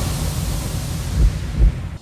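Logo-sting sound effect: a hissing noise over a deep rumble with a few low thumps, fading away at the end.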